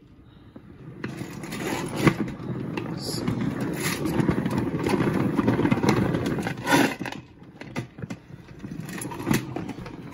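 Plastic salad spinner spun by hand with wet LEGO bricks inside, spinning the water off them: a rattling whir of the bricks tumbling against the basket that builds up over the first few seconds and dies away about seven seconds in, with a few sharp clicks.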